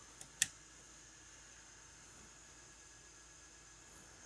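A patch cable's 3.5 mm plug clicking into a Eurorack module jack: a faint click, then one sharp click just after, followed by faint room tone.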